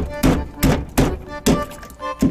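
Kitchen knife chopping into an anglerfish's jaw and striking the cutting board beneath, about five sharp strikes in two seconds.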